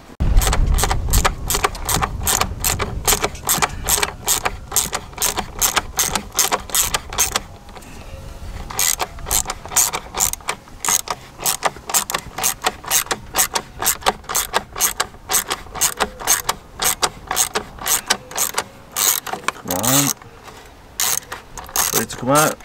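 Hand socket ratchet clicking as a bolt in the engine bay is worked loose: a rapid run of ratchet clicks, a few per second, with a short break about eight seconds in.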